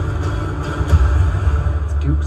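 Movie trailer soundtrack: a deep, heavy rumble under the score, with a sharp hit about a second in.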